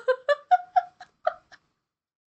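A person laughing in a run of short bursts, about four a second, trailing off.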